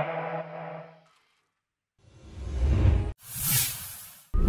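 The last held note of the dance track fades out within the first second, followed by about a second of silence. Then a rising electronic swell builds and cuts off suddenly, and a short whoosh sound effect follows and fades.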